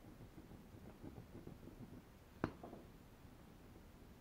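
Faint scratching of a pencil marking a line on a strip of wood, with one sharp tap about two and a half seconds in.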